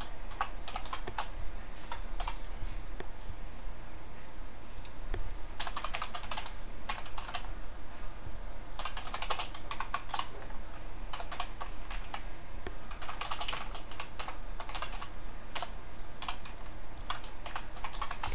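Computer keyboard being typed on in quick bursts of key clicks, with short pauses between the bursts.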